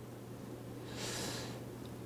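A man drawing a short breath through the nose about a second into a pause in speech, over a faint steady low hum of room tone.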